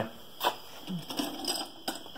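Two light clicks about a second and a half apart, over a faint background.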